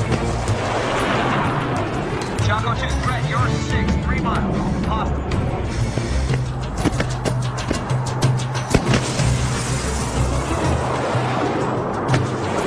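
Dramatic soundtrack music with a steady bass line over jet aircraft noise, with a run of sharp hits about seven to nine seconds in.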